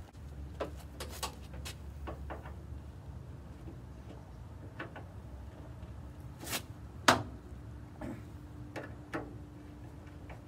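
Scattered light metallic clicks and taps from the cab door and its catch on a 1948 Ford F1 pickup being handled and worked with a screwdriver, with one sharper click about seven seconds in.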